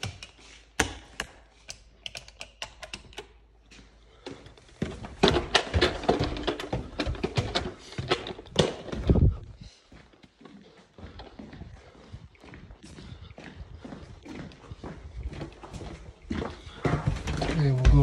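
Footsteps going up wooden stairs and across the floor: a run of uneven knocks and thuds, heaviest for a few seconds in the middle.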